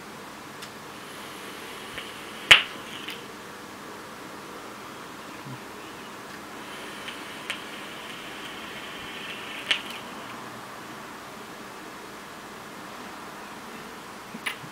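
Faint hiss of a long drag drawn through a dripping atomizer on a mechanical mod vape, coming in two stretches, with a sharp click about two and a half seconds in and a smaller one near ten seconds.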